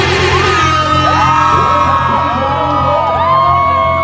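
Loud dance music with a heavy, steady bass played over a concert PA, with several long, high, gliding voices whooping and crying out over it.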